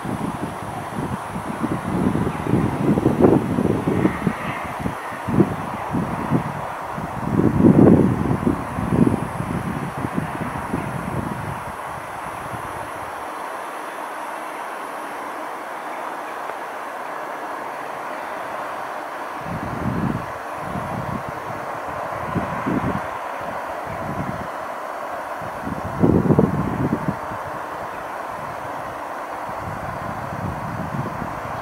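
Wind buffeting the camera microphone in irregular low gusts, dropping away for several seconds mid-way and returning, over a steady distant hum of traffic.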